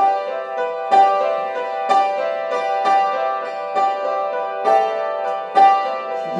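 Upright piano playing a repeating broken-chord figure, with a stronger struck note about once a second, as the instrumental opening of a song before the voice comes in.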